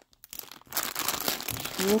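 Clear plastic bag of ribbon and lace trims crinkling as it is handled, starting a little under a second in.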